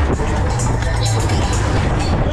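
Loud fairground ride music with a heavy bass, over the rumble and rushing noise of a spinning Break Dance ride, with voices mixed in.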